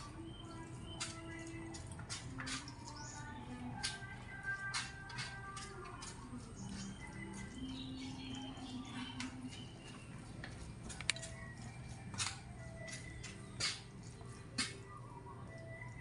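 Chopsticks stirring and picking at noodles in a styrofoam takeaway box, with scattered sharp clicks and scrapes, over a low steady hum.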